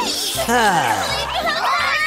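Children's high voices shouting and calling out as they play, rising and falling in pitch, over background music.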